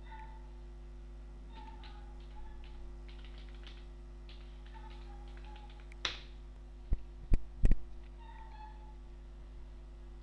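Computer keyboard typing, a quick run of small key clicks as a command is entered, followed by three sharp, loud knocks in quick succession about seven to eight seconds in. Faint short falling calls sound in the background several times.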